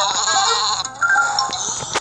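Cartoon sheep bleating twice, the first call quavering and the second about a second in, over high, steady shimmering tones from a children's Bible story app.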